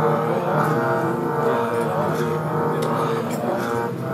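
Sikh kirtan: harmoniums hold a steady drone under group chanting of simran, with tabla strokes.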